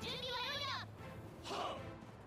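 Dialogue from the anime, playing quietly under the reaction: a high-pitched voice asks a short question in the first second, then a second voice answers, over background music.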